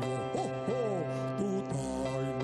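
Music on an electronic keyboard: held chords sounding steadily, with a voice swooping up and down in pitch in wordless glides during the first second.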